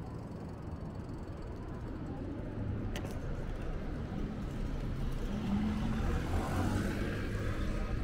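Street traffic ambience recorded from a moving bicycle: a steady low rumble, with traffic noise swelling over the second half and a single sharp click about three seconds in.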